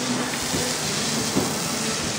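Pistol-grip garden hose nozzle spraying a steady hissing jet of water onto a horse's wet coat.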